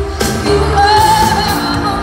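Live pop-rock band playing, with a woman singing lead in long held notes over guitars, keyboards, bass and drums.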